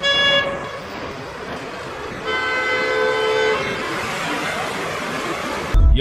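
Car horns honking over city street traffic: a short honk at the start and a longer one, lasting over a second, about two seconds in.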